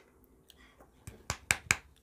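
Small plastic paint bottles clicking against each other and the table as they are handled: a faint tap, then four or five sharp clicks in quick succession in the second half.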